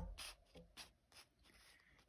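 A hand moving over tarot cards laid out on a table: faint rubs and a few light ticks of fingers and nails on the card stock, thinning out after about a second.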